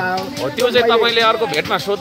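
A man talking close to the microphone, with no break in the voice.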